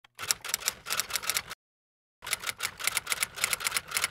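Rapid clicking like typing, several clicks a second. It stops dead for about half a second in the middle, then resumes.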